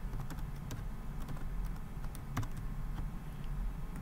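Typing on a computer keyboard: a dozen or so short, irregular key clicks over a low steady hum.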